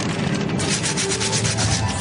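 A scratch card being scratched with a coin: rapid scraping strokes, about ten a second, starting about half a second in, over soft background music.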